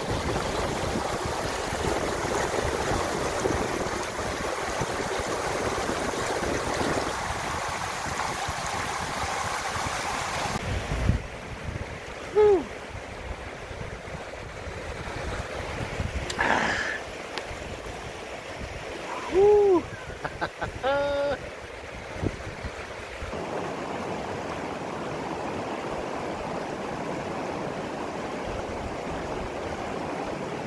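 Fast, shallow mountain river rushing over rocks, loud and close for the first ten seconds or so. It then cuts to a quieter stretch where a few short, pitched wordless vocal sounds stand out, before the steady rush of the river returns near the end.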